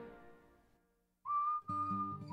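The last sung note of a song fades out into a brief silence; a little past halfway a whistled melody begins, with plucked guitar notes joining under it near the end.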